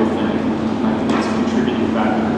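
A man talking, with no words made out, over a steady low hum.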